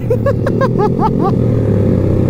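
Honda Vario automatic scooter riding at steady speed: its engine runs steadily under a haze of wind and road noise. A run of short rising-and-falling chirps sounds over it in the first second or so.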